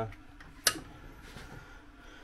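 A single sharp click about two-thirds of a second in, over quiet room noise.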